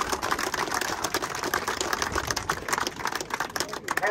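Crowd applauding: many hands clapping at once in a dense, steady run of claps.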